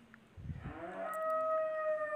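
A long drawn-out animal call, one steady held note lasting about a second and a half that drops lower near the end, preceded by a brief low thump about half a second in.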